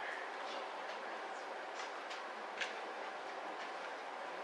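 Quiet room tone: a steady hiss of background noise with a few faint clicks and taps, the clearest about two and a half seconds in.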